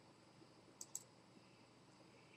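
Near silence: room tone, with two faint clicks close together about a second in.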